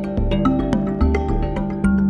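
Background music with quick pitched notes over a low bass line.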